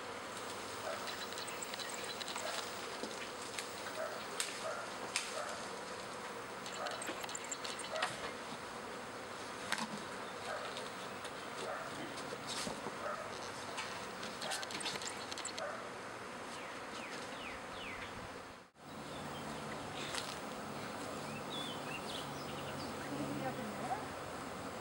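A swarm of honey bees in flight, a dense steady buzzing with many small ticks from bees passing close. About three quarters of the way through, the sound cuts out for a moment and returns as a steadier, lower hum.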